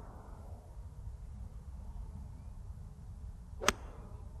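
A golf club striking a ball once, a single crisp click near the end, over a faint low rumble. The shot is called a better strike.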